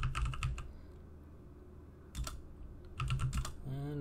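Computer keyboard typing: a quick run of keystrokes, a single keystroke about two seconds in, then another short run about three seconds in.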